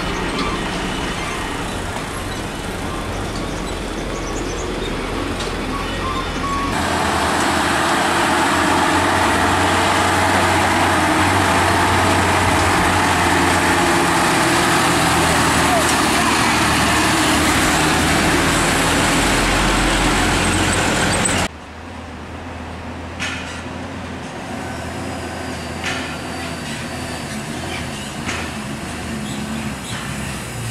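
Heavy diesel truck engines labouring up a hill road. A truck passes close from about 7 s with a loud engine and wide road noise, which cuts off suddenly about 21 s in. A quieter truck engine follows as the next truck approaches.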